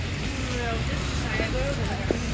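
Street ambience: a steady low rumble of road traffic, with indistinct voices of people nearby.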